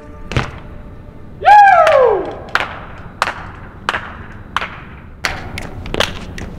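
A BMX bike landing hard on concrete, a single thud, then a loud squeal that falls in pitch over most of a second. After it come sharp clicks about every two-thirds of a second.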